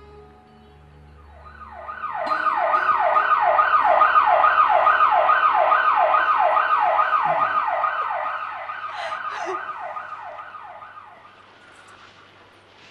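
Emergency-vehicle siren in a fast yelp, about two to three rising-and-falling sweeps a second. It grows louder over the first few seconds, is loudest around four seconds in, then fades away near the end.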